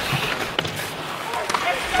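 Ice hockey arena crowd noise with sharp clacks of sticks and puck on the ice, two clear ones about half a second and a second and a half in.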